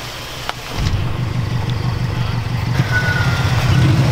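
A car engine running as the car drives up, starting about a second in and getting gradually louder as it nears.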